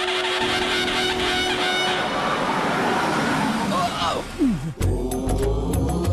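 Film soundtrack: a held, steady tone over a dense rushing sound fades out about two seconds in. A sharply falling swoop follows, and then devotional music with heavy drums starts abruptly near the end.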